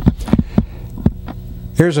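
Steady electrical mains hum with a few soft, irregular low thumps, then a man starts speaking near the end.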